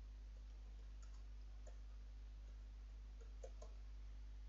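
Faint computer keyboard key clicks as a label is typed: a few scattered clicks, then three close together near the end. Underneath is a steady low electrical hum.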